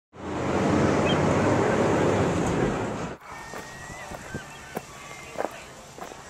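A loud, even rushing noise that cuts off suddenly about three seconds in. It is followed by quieter street ambience with scattered footsteps and a few brief high chirps.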